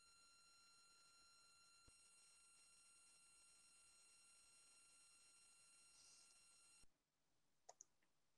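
Near silence, with faint steady high tones that cut off near the end.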